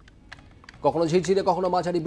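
Faint, scattered sharp clicks, then a person starts speaking loudly about a second in.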